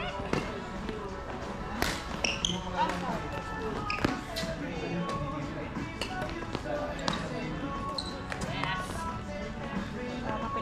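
Badminton rally: the shuttlecock cracks off rackets every second or two, with sneakers squeaking on the wooden court floor, over background chatter and music in a reverberant hall.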